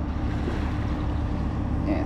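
Steady low drone of a large ship's machinery carrying across the water, with a constant faint hum.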